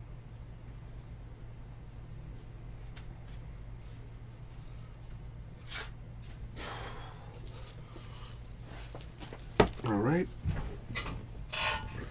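A steady low hum with faint scattered clicks and rustles. Near the end comes a sharp click, then a short wordless sound from a voice.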